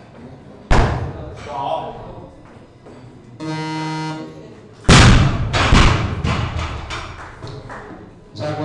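Weightlifting snatch on a competition platform: a thud as the lifter's feet land in the catch, then a steady electronic tone about a second long, the referees' signal to lower the bar. Then the loudest sound: the loaded barbell dropped onto the platform, with the bumper plates bouncing and knocking several times as it settles.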